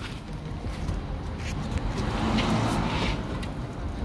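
Background vehicle noise: a low engine rumble that swells and fades again about two to three seconds in, like a vehicle passing, with a few faint knocks.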